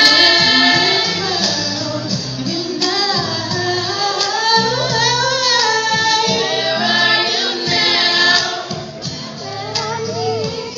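High voices singing held and gliding notes, with no clear words, as the song goes on.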